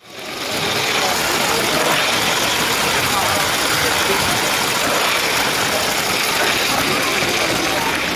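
Steady running noise of a Lego train on plastic track close to the microphone, wheels and motor rattling and humming, mixed with crowd chatter. It fades in quickly from silence at the very start.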